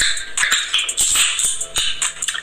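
A soda can of Dr Pepper Strawberries & Cream cracks open with a sharp click of the pull tab, followed by a hiss of escaping carbonation.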